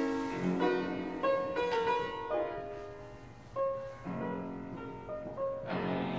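Late 18th-century Viennese fortepiano played in a classical style: a melodic line of single notes and chords that ring and die away, thinning out about halfway through before a new phrase, with a strong chord near the end.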